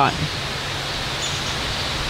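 Steady, even rushing outdoor background noise with no distinct events.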